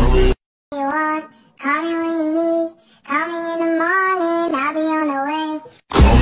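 A high voice singing alone, with no accompaniment, in three phrases with short gaps between them, after the backing music cuts out abruptly near the start; the full music comes back in at the very end.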